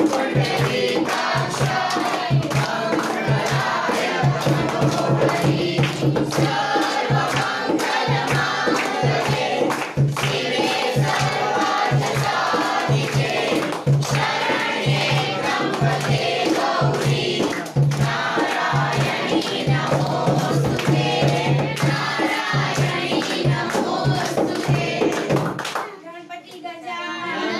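A group of voices singing a Hindu devotional song with hand-clapping and a steady repeating beat underneath; it stops abruptly at the very end.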